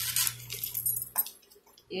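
Paper scissors cutting through a paper sewing pattern: a few crisp snips of the blades closing through the sheet in the first second or so, then a brief pause.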